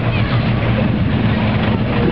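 Engine of a 1930s American sedan driving slowly past, a steady low hum, under heavy wind noise on the microphone.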